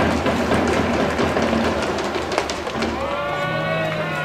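Ballpark crowd ambience with scattered sharp thumps, and about three seconds in a long held note with a rising start.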